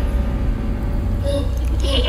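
A low, steady rumbling drone, edited in as a tension sound effect, with a short higher-pitched tone coming in near the end.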